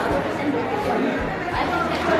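Indistinct talk of several people at once: a crowd chattering in a room.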